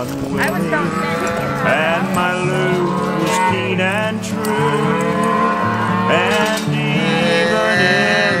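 Calves bawling repeatedly as they are roped and held down for branding, over the instrumental backing of a country song with a steady, stepping bass line.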